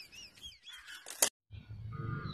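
Faint bird chirping: a quick series of short, arching chirps in the first second. A sharp click and a moment of silence follow.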